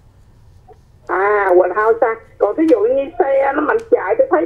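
Speech only: after a second-long pause with faint low hum, a caller's voice comes over the phone line and keeps talking.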